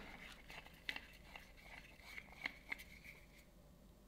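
Faint scattered clicks and light taps of hands handling a plastic smartphone clamp and tripod grip while it is screwed tight.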